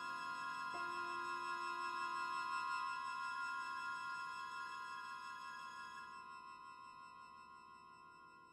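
Orchestral music: a single high note is held with a slight waver over a soft lower chord, and a lower note swells in about a second in and soon dies away. The held note slowly fades out, closing the section.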